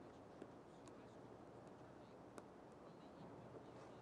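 Near silence: room tone, with two faint ticks, one near the start and one a little past the middle.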